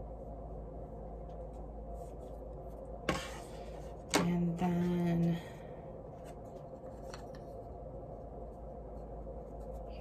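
Quiet handling of laser-cut birch plywood pieces on a table: faint taps and clicks, a short scrape about three seconds in, and a brief two-part low hum about a second later.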